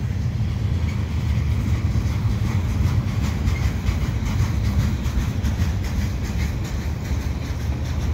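Freight cars of a Canadian Pacific mixed freight train rolling past close by: a steady low rumble of steel wheels on rail, with faint clicking.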